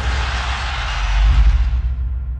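Cinematic intro sound effect: a deep bass boom under a rushing whoosh of noise. It swells again about a second and a half in, then begins to fade.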